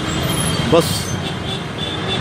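Street traffic: motorcycle and light-vehicle engines running as they pass close by, over a steady rumble of road noise.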